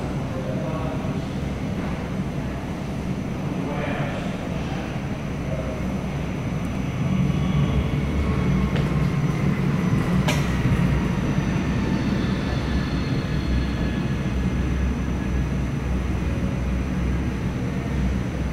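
Airbus A220-100's Pratt & Whitney PW1500G geared turbofans at go-around thrust as the jet climbs away overhead, heard through the terminal glass as a low rumble that swells about seven seconds in. A faint whine falls in pitch as it passes.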